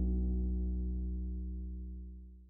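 The final chord of a zamba on acoustic guitar, with a deep bass note under it, ringing out and fading steadily until it is nearly gone by the end.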